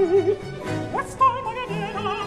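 A high operatic voice sings a slow line with wide vibrato over a baroque string orchestra. The voice leaps upward about a second in.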